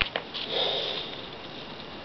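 A person sniffing once through the nose, lasting under a second. It comes just after two light clicks as she handles a paper pamphlet.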